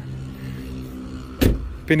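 A single solid thump about a second and a half in, a pickup's door being shut, over a steady low hum.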